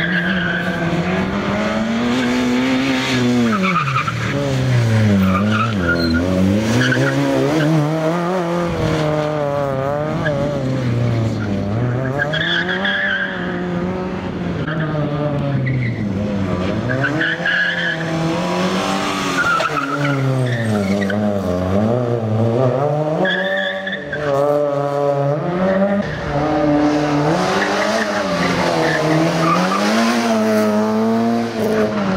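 Fiat Cinquecento rally car's engine revving hard, its pitch climbing and dropping again and again as it is driven flat out through tight corners, with short tyre squeals in between.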